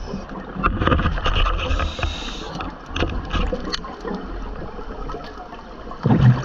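Scuba diver exhaling through a regulator underwater: a rush of bubbles from about one to two and a half seconds in, with scattered crackling and clicks of bubbles around it.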